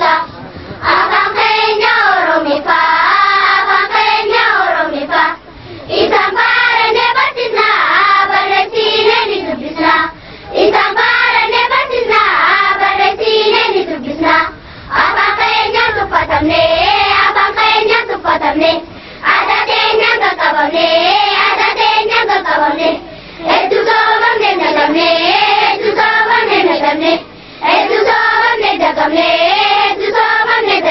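A group of children singing together in unison, a song in Afaan Oromo. It goes in phrases of about four seconds, each followed by a short breath pause.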